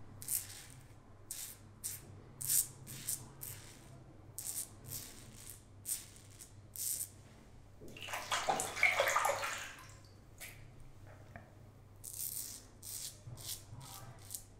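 Safety-razor strokes rasping through lathered stubble in a series of short, quick scrapes. About eight seconds in comes a louder two-second rush of water, typical of rinsing the razor under a running tap, and then the short strokes resume.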